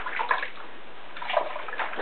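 Water sounds from a toddler's hair being washed with a wet cloth over a plastic basin: steady, moderate-level washing noise without sharp events.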